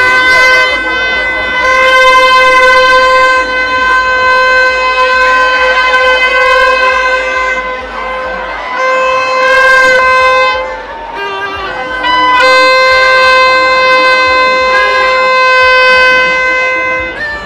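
Loud music: a high wind-instrument-like note held steady for several seconds at a time. It breaks off about nine seconds in and comes back about twelve seconds in, over faint crowd noise.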